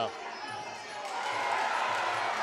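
Fight-crowd noise ringside at a Muay Thai bout: a steady haze of audience voices that swells louder about a second in.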